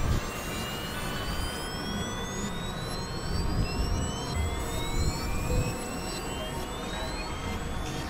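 Experimental electronic noise music from synthesizers: a dense, rumbling drone with several high whistling tones that glide upward one after another and overlap, each rising over two or three seconds.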